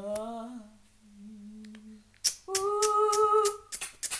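A person humming: a soft rising hum, then a quieter low hum, then a louder held note of about a second, starting about two and a half seconds in. Sharp clicks come just before the held note and again right at the end.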